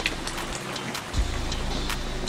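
Rain falling on a sailboat's deck, a steady patter with scattered sharp drop ticks. About a second in, background music with a slow bass beat comes in.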